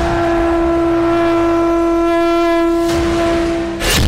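A conch shell (shankh) blown in one long, steady note that holds for nearly four seconds, then breaks off into a short whooshing hit near the end.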